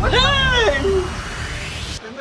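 A woman's high-pitched cry: one call of under a second near the start that rises and then falls in pitch, over a low background rumble.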